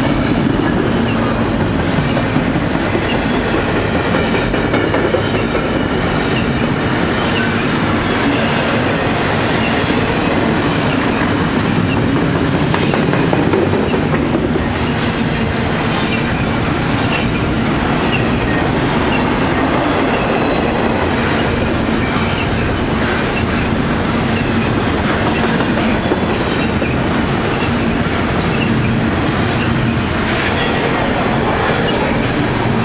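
Double-stack container well cars of a long freight train rolling past close by: a loud, steady rush of steel wheels on rail, with wheels clacking over the rail joints.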